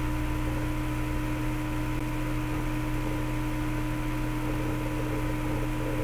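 Steady hum with a few held tones over a faint hiss: unchanging background noise on the recording.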